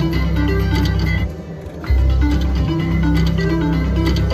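Mermaid's Gold slot machine playing its reel-spin music, a plucked-string tune over a steady bass. It stops a little over a second in as the reels land, then starts again less than a second later as the next spin begins.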